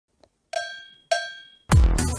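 Two cowbell clangs about half a second apart, each ringing and dying away. Near the end, electronic music with a heavy bass beat starts.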